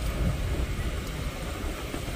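A moving car's steady road and wind rumble, heard with the side window open.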